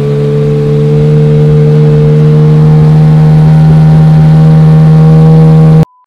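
Outboard motor driving an aluminium jon boat along at speed: a loud, steady drone that climbs slightly in pitch, with wind buffeting the microphone. It cuts off suddenly near the end.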